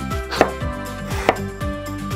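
Small kitchen knife cutting through a pickle onto a miniature wooden cutting board: two sharp chops about a second apart.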